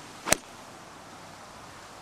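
Golf iron striking a ball off grass: one sharp click about a third of a second in, over a faint steady hiss of outdoor air.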